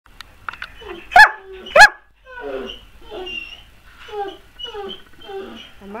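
Irish wolfhound barking: two loud, sharp barks about a second in. These are followed by a run of quieter, shorter calls, each falling in pitch.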